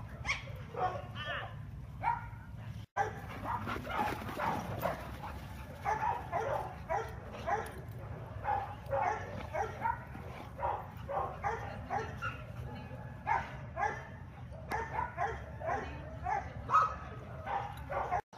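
Several dogs barking and yipping in rough play, short calls coming several a second throughout, over a steady low hum.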